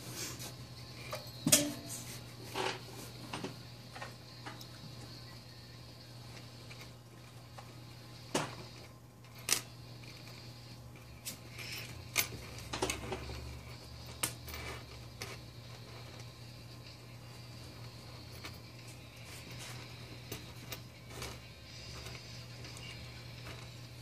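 Small zinc jack chain clinking in scattered light taps as it is handled and its links are hooked together, over a steady low hum.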